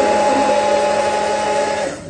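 Electric hand-held stick blender running at a steady pitch in a jug of milk and yogurt, whipping lassi to a froth; it cuts off just before the end.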